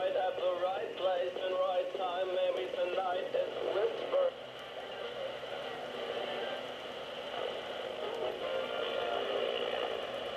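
Sony ICF-A15W clock radio playing an FM broadcast through its small speaker, thin and tinny: a voice with music for about four seconds, then the sound drops and turns to a hazier mush. Reception is poor because the radio's antenna has been broken off.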